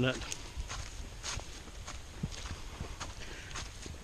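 A hiker's footsteps on a woodland trail while walking uphill: soft, uneven footfalls.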